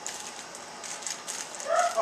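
Clear plastic bags crinkling and rustling in irregular little crackles as hands sort through a pile of bagged Happy Meal toys.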